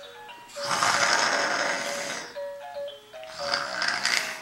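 Baby's electronic musical activity table playing a simple electronic melody of short notes, with loud breathy laughter over it from about half a second to two seconds in.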